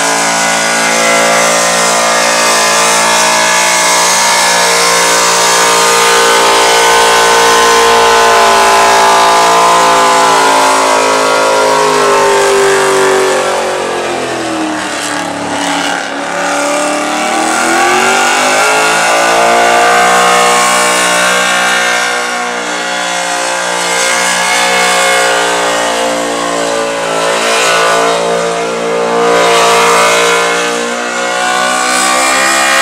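Supercharged engine of a Holden panel van held at high revs in a smoking burnout, its rear tyres spinning. The revs sag about halfway through and climb back up a few seconds later.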